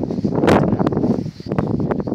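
Wind buffeting the microphone in uneven gusts, with sharper crackles and a brief drop in level about two-thirds of the way through.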